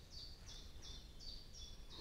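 A songbird singing faintly: a run of short, high, evenly spaced notes, about three a second.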